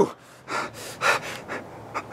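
A man breathing heavily, three or four short breaths out of breath and exasperated.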